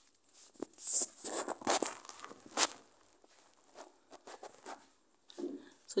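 Fabric rustling and crinkling in several loud bursts over the first three seconds as a sewn corset panel with its lining is turned right side out by hand, followed by a few faint rustles.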